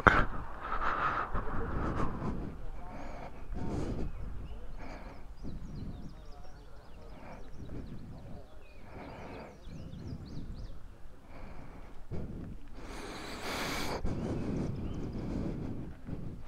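Faint, indistinct voices of people talking nearby over outdoor ambience, with a brief rush of noise about thirteen seconds in.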